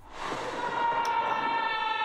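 Film-trailer sound effect: a sustained tone with a stack of overtones over a rushing swell, fading in at the start and holding steady as the trailer opens on a bright flash of light.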